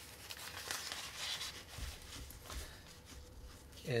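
Silnylon fabric rustling and crinkling as hands fold and spread it, with a couple of soft bumps about two seconds in.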